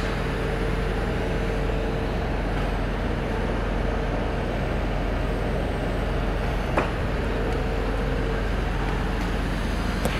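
TIG welding arc on a steel pipe joint: a steady hiss over a low, even hum, with one short click about seven seconds in.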